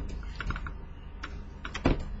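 Stylus tapping and scratching on a graphics tablet while a word is handwritten: a run of light, irregular clicks with a louder knock near the end.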